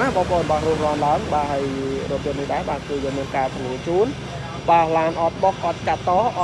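A person talking continuously, over a steady low hum.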